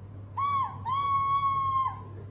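Plastic toy saxophone blown, sounding two steady horn notes at the same pitch: a short one, then a longer one of about a second. Each note sags in pitch as the breath runs out.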